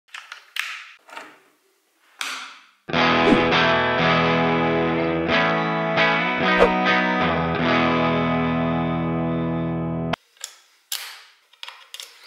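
A cable jack is plugged into an electric guitar with a few clicks and rattles, then an electric guitar chord rings out through an amplifier, held for about seven seconds and cut off suddenly, followed by more short handling clicks.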